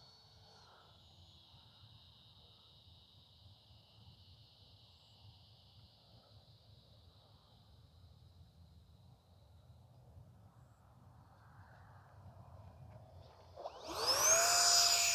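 Near silence filled by the steady high chirring of insects such as crickets. At the very end a rising whine starts as the Habu SS's 70 mm electric ducted fan spools up for a touch and go.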